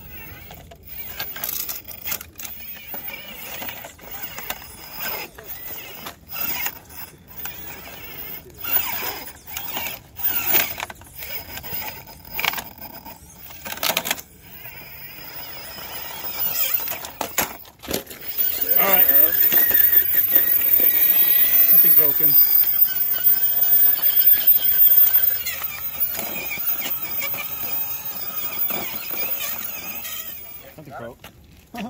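Electric RC rock crawler picking its way over a boulder: short stop-start bursts of motor and gear whine with clicks and knocks of tyres and chassis on rock. About two-thirds of the way through, a much louder shrill sound with sliding pitch takes over for several seconds.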